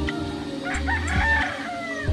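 A rooster crowing once, starting partway in and trailing off with a falling tail, over background music with a steady beat.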